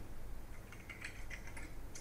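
Typing on a computer keyboard: a quick run of keystrokes, starting about half a second in, as a web address is typed into the browser.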